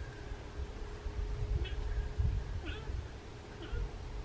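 Fallow deer buck in rut giving low, irregular groans.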